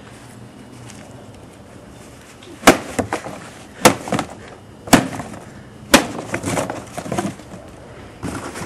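A hand tool driven down into a cardboard box: four sharp, loud blows about a second apart, followed by several lighter knocks.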